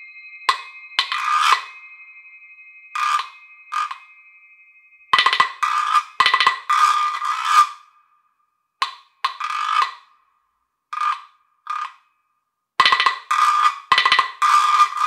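Tubular wooden guiro scraped in short rasping strokes of about half a second each, in irregular groups with pauses between them, over a faint ringing tone. High crotale tones fade away during the first few seconds.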